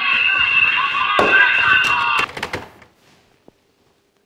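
Loud, harsh, distorted shouting blaring from a telephone handset for about two seconds, with a knock partway through. It is followed by a few sharp clattering knocks as the handset is put down.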